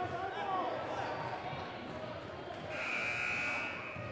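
A referee's whistle blown once, a steady shrill blast about a second long, near the end, over voices in the gym.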